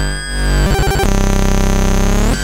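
Synthesized oscilloscope music: a stereo electronic signal that itself draws the vector shapes on the scope. Buzzing tones with a brief stuttering, chopped passage about three quarters of a second in, then a steady dense buzzing tone, the signal tracing mushrooms.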